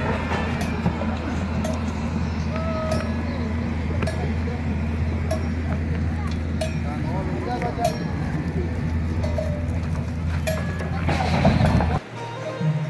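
A group's footsteps on gravel with scattered clicks and clinks and faint, distant chatter, over a steady low hum; the noise swells near the end.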